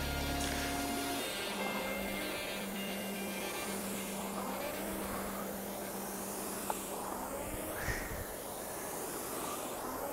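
Background music with a held low note over the steady whir of a Concept2 rowing machine's air-resistance flywheel, which surges with each stroke about every three seconds.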